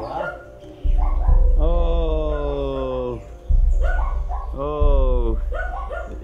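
A voice giving two long, drawn-out calls that fall in pitch, the first about a second and a half long, the second shorter near the end, over a low rumble.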